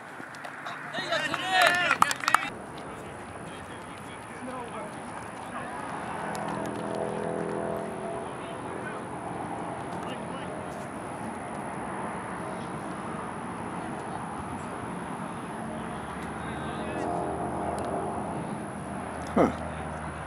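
Players' and spectators' voices across an outdoor playing field: high shouts about a second to two seconds in, then distant calls and chatter, with another short shout near the end.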